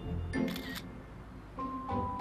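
Smartphone camera shutter sound, a single short click about half a second in, over soft background music.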